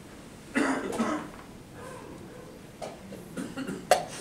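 A person coughs about half a second in. Just before the end there is a single sharp click as a move is played at the wooden chessboard and clock.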